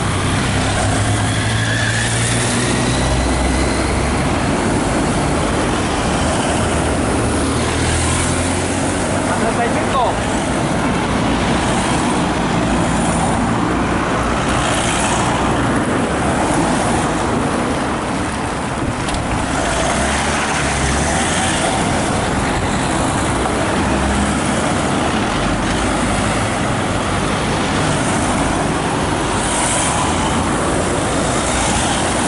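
Race support cars driving past close by one after another, a steady mix of engine hum and tyre noise on the road.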